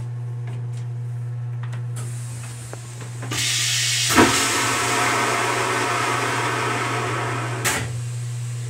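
Rail-car toilet flushing: about three seconds in, a loud hissing rush of water starts with a knock just after it and runs for about four seconds before cutting off with a click. A steady low hum runs underneath throughout.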